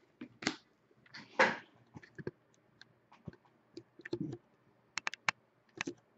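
Hockey trading cards being handled and flipped through by hand: cards slide and flick against each other in short swishes and irregular sharp clicks, with a quick run of clicks near the end.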